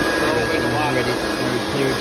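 Air blower running steadily, blowing water off a freshly washed engine bay to dry it: a loud, even rush of air with a thin steady whine.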